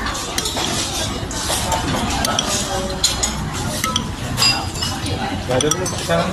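Metal cutlery clinking and scraping against a plate while eating, a series of short sharp clinks that come more often in the second half.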